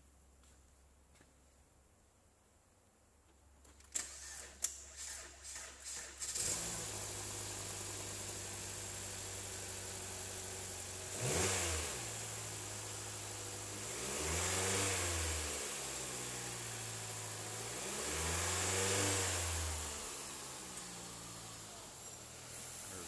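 A 2016 Mitsubishi Outlander Sport's 2.4-litre four-cylinder engine is cranked by the starter for about two seconds, catches, and settles to a steady idle. It is then revved three times: a short blip, then two longer revs, each falling back to idle.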